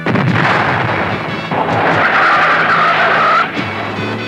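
A car's tyres squealing in a long skid, starting suddenly with a loud rush and holding a wavering screech for about two seconds before cutting off shortly before the end. A music score plays underneath.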